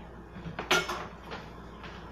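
Kitchen cookware and utensil clatter: one sharp knock about two-thirds of a second in, followed by a few lighter taps.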